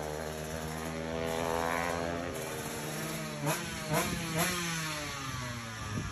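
Drag-racing motorcycle at full throttle on the strip, its engine note falling in pitch over the first two seconds. About halfway through come three sharp pops in quick succession, each followed by the revs climbing again, before the sound fades.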